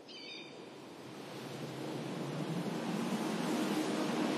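A rushing noise that swells steadily louder, with a brief high chirp right at the start.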